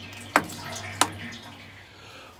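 Hand-operated sump lift pump on a Barrus Shire 45 narrowboat diesel being worked by its brass handle, drawing the old engine oil up out of the sump: a sharp click at each stroke, two strokes about two-thirds of a second apart, with liquid sounds from the oil being pumped.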